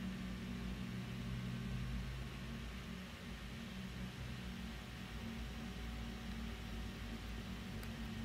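Steady low hum with an even hiss: background room noise on the microphone, with a faint click near the end.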